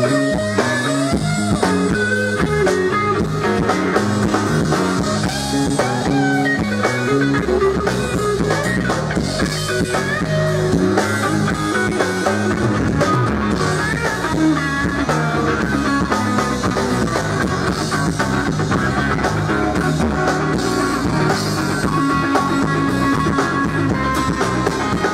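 Live blues-rock band playing an instrumental passage: electric guitar lines with bent notes over bass guitar and drum kit, with no singing.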